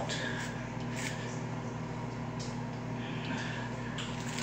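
Faint scratchy strokes of a hairbrush being pulled through hair stiff with hairspray, over a steady low electrical hum in the room.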